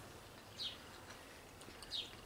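Quiet background with a faint bird chirping twice, a short falling note about half a second in and again near the end.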